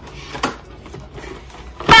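A cardboard shipping box being handled and its flaps pulled open. There is a brief rustle about half a second in and a sharp, loud snap of cardboard just before the end.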